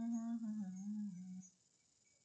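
A person humming with closed lips, one short phrase of about a second and a half that holds a note and then dips lower before stopping.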